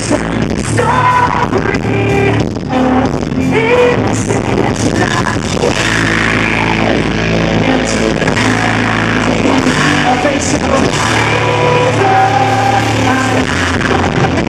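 Loud live post-hardcore band: distorted electric guitars and drums, with a vocalist singing over them.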